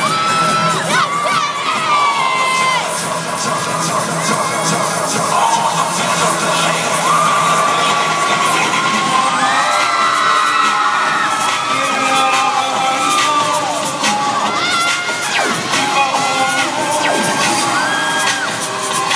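Crowd cheering and screaming, with many shrill, drawn-out yells rising and falling over a steady roar.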